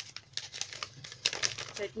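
Crinkling of wrapping being handled and unwrapped from a makeup compact, a run of short crackles that grows busier in the second half.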